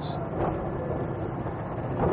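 Aixam Mega Multitruck's Kubota 400 cc two-cylinder diesel engine and road noise heard from inside the cab while driving, a steady low drone.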